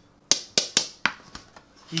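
Metal deep-dish pizza pan being handled on a wooden cutting board: about five sharp clicks and knocks in quick succession in the first second and a half.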